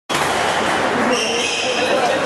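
Busy squash hall ambience: indistinct voices with the thuds of squash balls being struck on nearby courts, echoing in the large hall.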